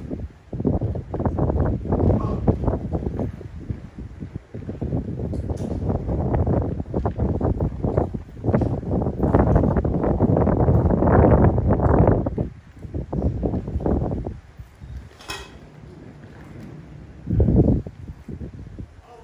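Wind buffeting the phone's microphone in irregular gusts, heaviest in the middle and easing for a few seconds before one last gust near the end, with a single sharp click shortly before that.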